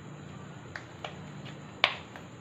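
Clay slime squeezed and kneaded by hand, giving two faint clicks and then one loud sharp pop near the end as air trapped in the slime bursts.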